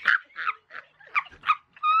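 A woman laughing hard in short, breathy, high-pitched bursts, about three a second.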